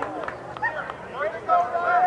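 Overlapping shouts and calls from soccer players and spectators across an outdoor pitch, with one long held shout about a second and a half in.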